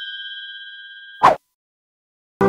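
Notification-bell chime sound effect, a bright ding of several steady tones fading away. About a second and a quarter in it is cut off by a short, loud transition sound.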